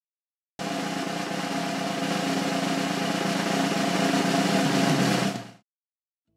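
Snare drum roll, starting abruptly about half a second in, growing slightly louder, then cut off suddenly near the end.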